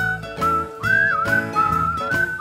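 A person whistling a song melody into a microphone, one clear tune that slides up and down in short phrases, over backing music with a steady strummed beat.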